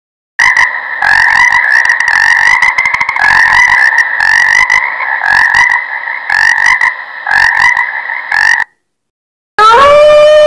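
A chorus of frogs croaking, a loud, continuous din of rapid pulsed calls that starts about half a second in and stops about a second before the end. Just before the end a wolf's howl begins, one long note that rises and then holds steady.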